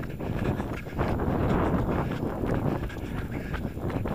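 Wind buffeting the microphone of a moving fisheye action camera, a steady gusting rush that grows louder about a second in.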